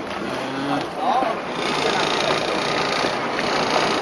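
Motorboat engine and water noise heard from on board, running steadily and growing louder about a second and a half in.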